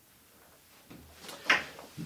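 Handling noises in a small room: a few light knocks and rustles, then one sharp knock about one and a half seconds in.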